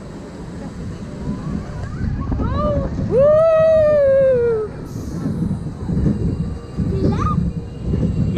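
Spinning roller coaster car rumbling along its steel track. About two and a half seconds in, a rider gives a long high-pitched yell that rises and then slowly falls, and a shorter rising cry follows near the end.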